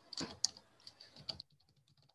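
Typing on a computer keyboard: a quick run of key clicks, louder in the first second and a half, then fainter.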